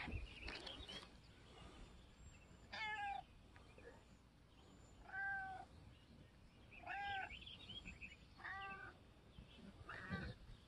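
A domestic cat meowing four times, short calls about one and a half to two seconds apart.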